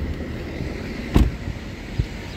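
The driver's door of a BMW 5 Series Touring (G31) is shut once about a second in, a single sharp thud over a steady low rumble.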